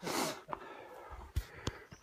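A hiker puffing out one heavy breath, winded from walking uphill, followed about a second later by a few soft thumps of footfalls.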